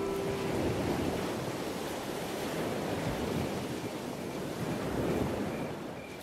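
Steady rushing noise of ocean waves on a shore, swelling and easing slightly. A held musical note fades out in the first half-second.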